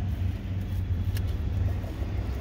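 Car engine idling, a steady low rumble heard from inside the cabin, with a single small click a little past a second in.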